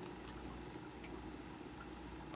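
Quiet room tone: a low steady hum with a few faint ticks, as of a computer mouse being clicked.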